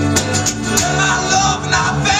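Live band playing acoustic-guitar-led rock: strummed acoustic guitar, bass guitar and conga drums keep a steady groove. About a second in, a wavering melodic line rises above them.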